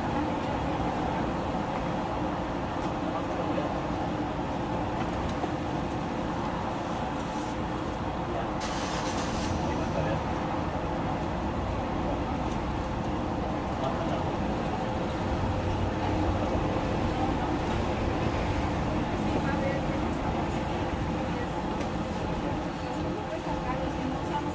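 Steady hum of road traffic with faint, indistinct voices, and a brief hiss about nine seconds in.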